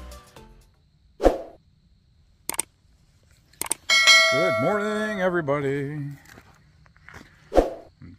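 Subscribe-button animation sound effect: a few clicks, then a bell-like ding about four seconds in with ringing tones and a wavering tail. There are short sharp thumps before it and again near the end.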